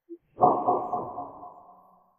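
An edited-in dramatic sound effect: a brief short tone, then a sudden dull hit that rings out and fades over about a second and a half.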